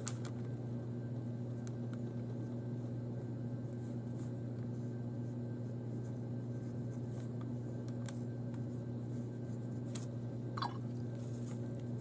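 A steady low hum, with a few faint soft clicks and a brief falling squeak about ten and a half seconds in.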